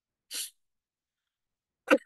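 Brief sounds from a person's mouth and nose against dead silence: a short breathy hiss about a third of a second in, then a short loud vocal burst near the end.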